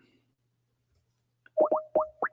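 Near silence, then near the end three quick rising electronic bloops with a short held tone between them: a computer calling app's sound as a call is placed.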